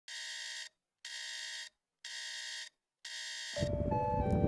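Electronic alarm beeping: four even beeps about one a second, each a little over half a second long. The last beep is cut off about three and a half seconds in as louder music and background sound come in.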